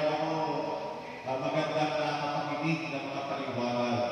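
A man's voice through the church's microphone and PA, carrying through a large reverberant hall, delivered in long held syllables.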